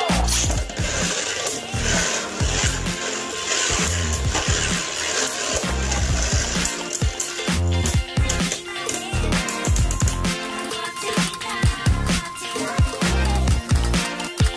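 Background music with a steady beat, over the whirr and clicks of two Beyblade spinning tops in a plastic stadium after launch: a dense hiss for the first few seconds, then sharp clacks as the tops collide.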